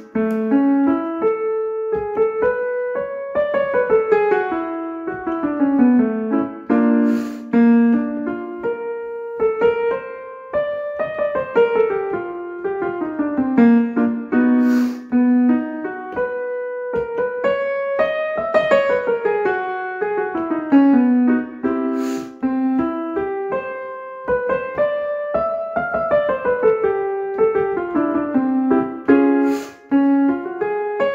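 Piano playing a vocal warm-up pattern: a run of notes climbing and then stepping back down, played four times over, each repeat pitched a little higher. A sharp struck attack marks the start of each new repeat.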